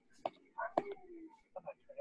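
Faint, broken bits of voice, like background murmuring from call participants, with a short click about a quarter second in.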